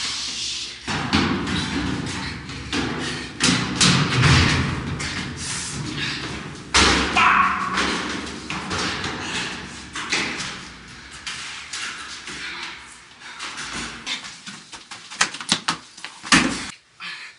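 Repeated thumps and scuffling of two people grappling and stumbling, with footsteps on metal stairs.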